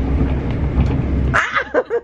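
Steady low rumble of a moving passenger train, heard from inside the carriage. About one and a half seconds in the rumble cuts off and a person laughs.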